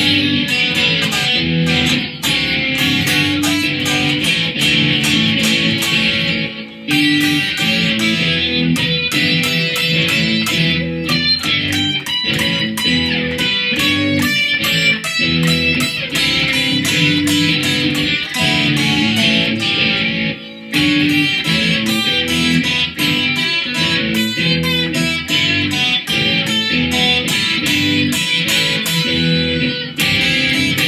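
Stratocaster-style electric guitar played through an amplifier, improvising blues in a dense stream of picked notes and chords. The playing briefly drops out twice, about a quarter and two-thirds of the way through.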